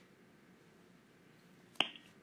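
Quiet room hiss, then a single sharp click near the end.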